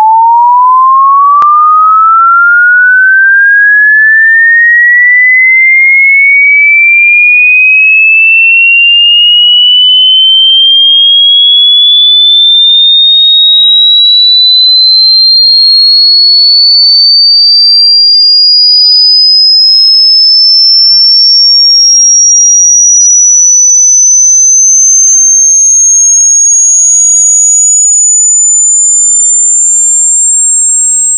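Loud pure sine-wave test tone from a 10–13,000 Hz linear frequency sweep, gliding steadily upward at constant loudness from a mid-pitched tone to a high, piercing whistle; the pitch climbs quickly at first and more slowly toward the end.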